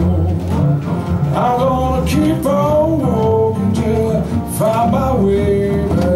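Live acoustic blues on resonator guitar and resonator bass: a steady bass line under a guitar melody whose notes slide up and down in pitch.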